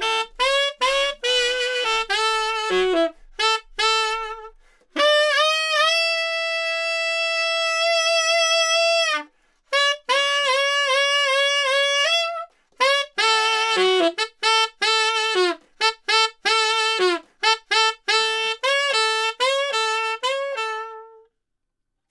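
Tenor saxophone played unaccompanied in a rock style: a run of short, punchy phrases with a long held high note from about five to nine seconds in. The playing stops about a second before the end.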